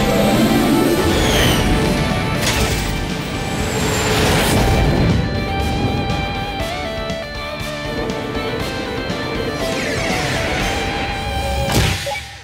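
Cartoon background music, with several sweeping whoosh effects laid over it.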